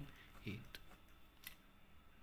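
Ballpoint pen writing on paper: a few short, faint scratching strokes as a figure is written and boxed in.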